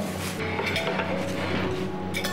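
Soft background music under light clinking of ceramic plates and cutlery being set out on a tray table.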